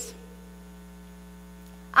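Steady low electrical mains hum with a row of faint, evenly spaced overtones.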